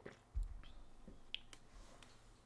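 A dull low thump about a third of a second in, then a few small clicks, the sharpest a little past a second in.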